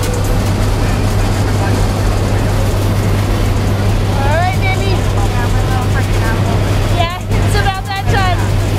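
Steady drone of a jump plane's engines and propellers heard from inside the cabin in flight, with an unchanging low hum under a wash of noise.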